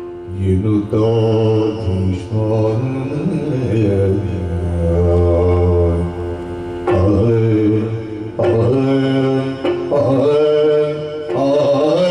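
Yakshagana bhagavata, a male singer, singing long held notes that glide slowly from pitch to pitch in a chant-like melody. A few sharp strokes break in about seven and eight and a half seconds in.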